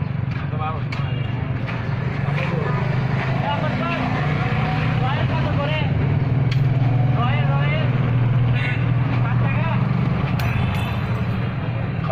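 A steady low engine hum runs throughout, with people talking in the background.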